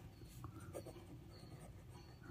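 Faint scratching of a ballpoint pen writing on notebook paper.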